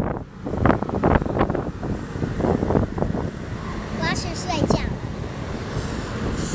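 Wind rumbling on the microphone, with short bursts of voice in the first two seconds and again about four seconds in.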